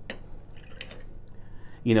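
Fresh lime juice poured from a small glass into a mason jar of ice, a soft trickle with a few light glass clinks.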